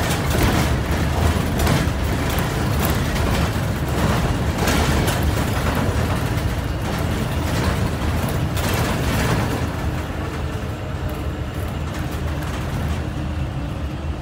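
Inside a moving city transit bus: the engine and the road noise run steadily through the cabin, with frequent short knocks and rattles. The noise eases a little about ten seconds in.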